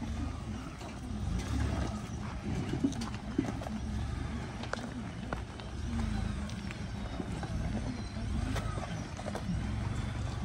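Pickup truck crawling slowly over a rocky dirt trail: a steady low engine and tyre rumble, with scattered sharp clicks of stones under the tyres.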